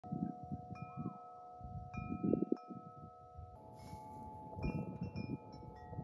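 Metal tube wind chime being struck several times, its tones ringing on and overlapping, over a low, irregular rumble.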